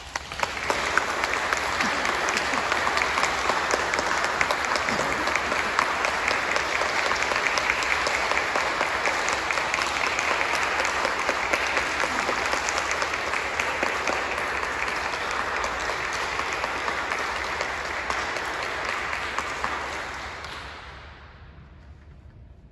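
Audience applauding, starting at once and holding steady for about twenty seconds before dying away near the end.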